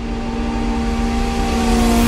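A rising whoosh, a swelling noise sweep over a held synth tone, grows steadily louder and brighter. It is an edit transition in the background music.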